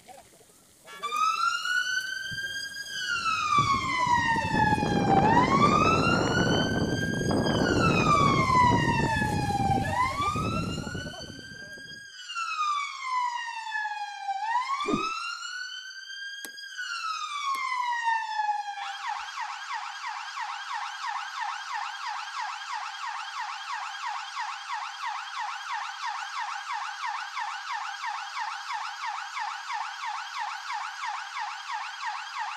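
Fire engine siren sounding a slow wail that rises and falls every four to five seconds, with a low rushing noise under the first few cycles; at about 19 seconds in it switches to a fast yelp.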